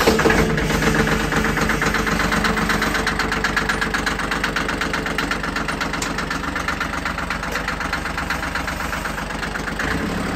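Small diesel tractor engine idling just after a warm start, with a steady, even diesel clatter. The level eases down a little as the engine settles into its idle.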